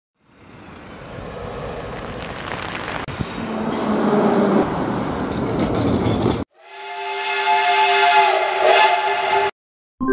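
Tram running on rails with steady wheel and track noise, cut off abruptly after about six seconds. After a short gap, a train horn sounds a chord of several tones for about three seconds and stops suddenly.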